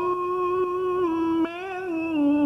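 A man's voice reciting the Qur'an in melodic tarannum style, holding one long vowel on a steady note. The note dips slightly about a second in, then wavers through an ornamental turn near the end.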